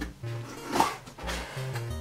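Background music with a steady bass line, and just before halfway a short loud rip as the flap of a cardboard box is pulled open.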